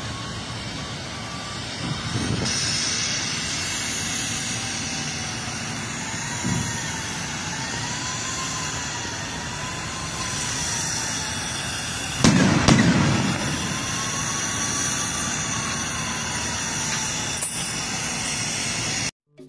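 Steady machinery noise from a sugar mill's hydraulic truck-tipping platform as it lowers an unloaded cane truck back to level, with a faint, slowly wavering whine. A loud metallic bang comes about twelve seconds in.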